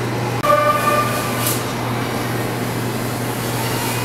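A short pitched toot, about half a second long and starting about half a second in, over a steady low hum.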